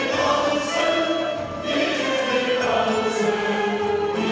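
Mixed choir of men and women singing a Turkish classical song in sustained, flowing lines.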